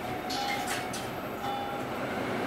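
Interior of a Proterra ZX5 battery-electric bus standing still: a short electronic beep repeats about once a second over a steady hum, with a few brief hisses.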